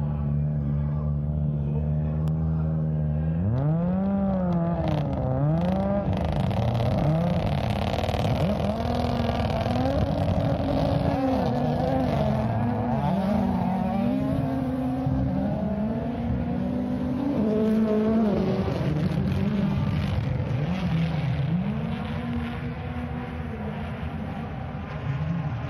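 Rally car engine holding a steady note, then accelerating away about three and a half seconds in, its revs climbing and dropping again and again through gear changes and lifts of the throttle.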